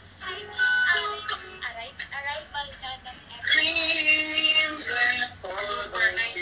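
Young people singing in a livestream call, the voices bending from note to note, with a longer held passage about halfway through.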